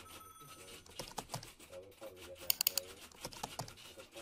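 Computer keyboard typing: a steady patter of key clicks, with a quick run of louder clacks about two and a half seconds in.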